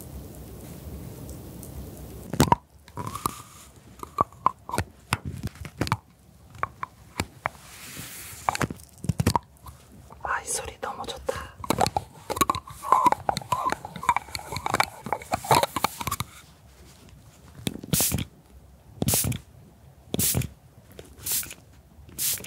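A spatula scraping crumbled pressed powder, then a handheld audio recorder being handled and tapped right at its microphones: sharp clicks and knocks, with a stretch of muffled voice-like sound in the middle and a run of loud single taps near the end.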